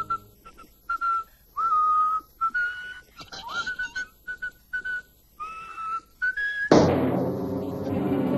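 A tune whistled in short separate notes, a few of them sliding in pitch, with brief gaps between phrases. Near the end, loud music cuts in suddenly.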